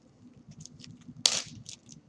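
Clear plastic zip-top bag crinkling as it is handled, in a few short rustles with one louder, sharp crinkle just past the middle.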